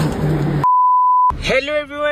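A single steady electronic beep, one pure mid-pitched tone lasting about two-thirds of a second, that starts and stops abruptly with all other sound cut out while it plays. Before it there is a noisy indoor background.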